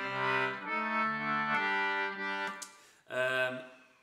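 Wheatstone Maccann duet concertina playing a few sustained chords, changing about once a second, then one short chord near the end.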